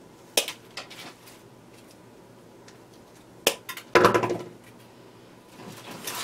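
Wire cutters snipping through the wired stem of an artificial palm-leaf spray: a sharp click about half a second in, a couple of smaller clicks after it, and another sharp click a few seconds later. Near the end comes a soft rustle of the leaves being worked into the wreath.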